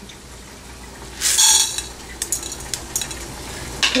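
Toor dal poured into a hot, dry non-stick pan of roasting spices, the lentils rattling onto the metal in one burst of about half a second about a second in. Scattered light clicks follow as the dal and seeds settle in the pan.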